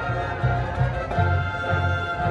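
High school marching band playing: the brass hold sustained chords over low notes that pulse about twice a second.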